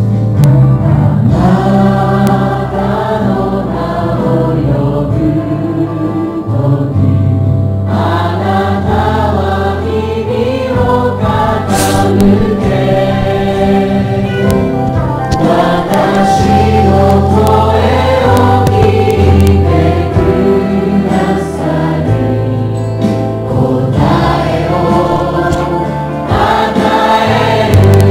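A worship team singing a Japanese Christian praise song together over band accompaniment.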